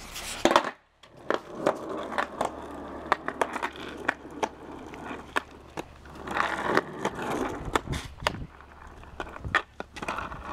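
Footsteps scuffing on a concrete sidewalk while a skateboard is carried, with irregular sharp clicks and knocks; near the end the skateboard is set down on the concrete.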